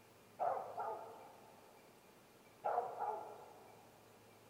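Two loud animal calls in a forest, about two seconds apart, each a quick double note that fades briefly.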